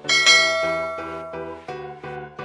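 A single bell-like chime rings out at the start and fades away over about a second and a half: the sound effect of a subscribe-button notification bell being clicked. It plays over background music with a steady, repeating pattern of notes.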